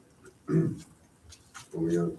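A person's voice: one short utterance about half a second in, then talk starting near the end, with quiet room tone between.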